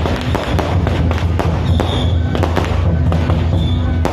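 Firecrackers going off in a dense, irregular crackle of sharp pops, over loud music with a steady low drone.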